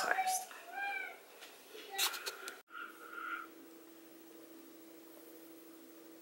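A pet cat meowing: a short high call that rises and falls about a second in, and another just after two seconds. After that a faint steady hum.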